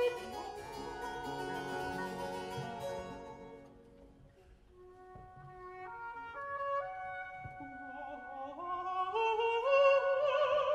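Baroque period-instrument opera orchestra, mainly strings, playing between sung phrases. The sound dies away to a soft low point about four seconds in, then builds again with rising stepwise lines. A singer comes back in right at the end.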